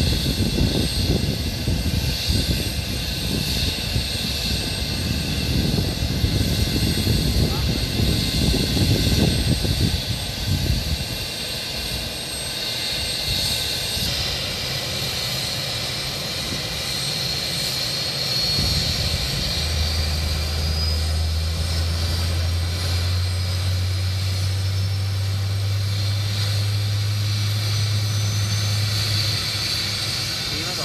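Marine One presidential helicopter running on the ground, its turbine engines giving a steady high whine. Partway through, one whine tone rises slowly in pitch, and a steady low hum joins about two-thirds of the way in. A rough low rumble sits on the microphone in the first third.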